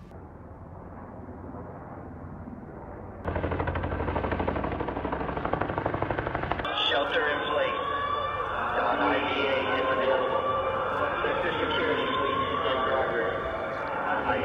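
A low background haze, then about three seconds in a loud, fast, steady rattle of sharp reports begins, heard during a night-time attack on an air base. From about seven seconds, wavering, wailing tones sound over it.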